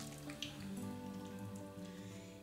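Oily, wet hands rubbing together, spreading an egg, rice-flour and olive-oil mask, with a few faint sticky, squishy clicks in the first half second. Quiet background music plays with steady held notes.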